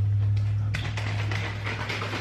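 A steady low hum with faint scattered clicks.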